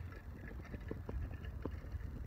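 Outdoor background noise on a handheld phone's microphone: a steady low rumble with faint, scattered ticks.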